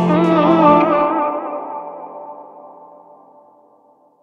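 The closing bars of a song: an electric guitar run through effects and echo plays wavering notes. The bass drops out about a second in and the whole sound fades away to almost nothing by the end.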